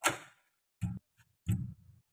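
Knob-lock latch and door clicking and knocking three times as the door is worked shut by its knobs: a sharp click at the start, then two duller knocks. The door does not close cleanly because drilling the deadbolt hole lifted one edge of the metal sheet.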